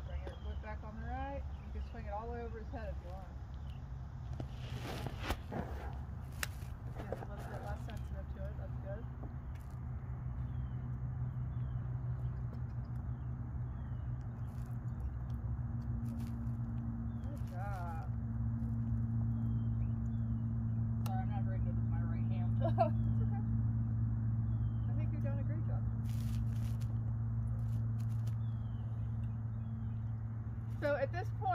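Faint, indistinct voices over a steady low hum that grows a little louder through the second half, with a few isolated sharp clicks.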